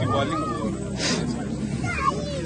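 Crowd voices: several boys and men talking over one another, some voices high-pitched, with a brief hissing consonant about a second in.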